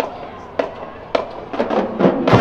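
A marching band's percussion count-off: three sharp cracks about half a second apart, then a quicker run of clicks just before the band comes in.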